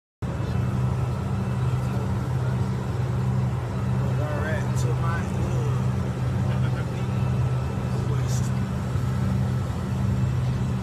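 Steady low drone of a vehicle's engines heard from inside its cabin: a constant deep hum with a higher hum above it and a wash of noise, with faint voices in the middle.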